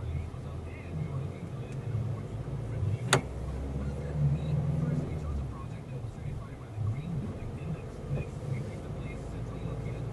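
Steady low road and engine rumble of a moving car, heard from inside its cabin, with one sharp click about three seconds in.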